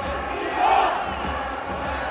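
Large stadium crowd of football fans shouting and cheering, swelling louder for a moment a little after half a second in.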